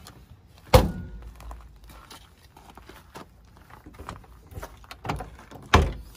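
Two solid thunks from a motorhome's exterior storage-bay doors, about five seconds apart; the first, about a second in, is a bay door being pushed shut. Faint small knocks and handling sounds fall between them.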